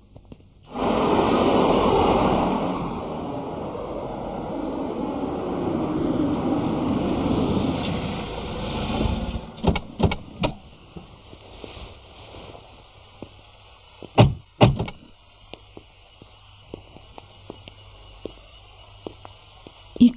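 A car drives up, its engine and tyres loud for about nine seconds before fading out. A few clicks follow, then two car-door thunks about half a second apart.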